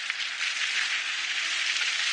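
Steady hissing noise in an animated soundtrack, a rain-like sound effect.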